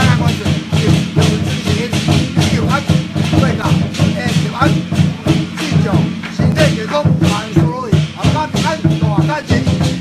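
Taiwanese temple ceremonial music: drums and gongs struck in a quick, busy rhythm, with a wavering melody line over a steady low sustained tone.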